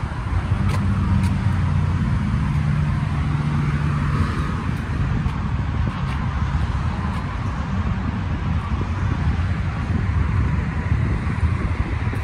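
Steady low motor-vehicle rumble, with an engine hum that stands out for the first few seconds.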